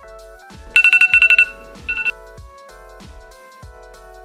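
Smartphone timer alarm going off about a second in: a loud, rapid string of high beeps for under a second, then a short second burst, marking the end of the three-minute setting time for a dental impression. Background music with a steady beat plays throughout.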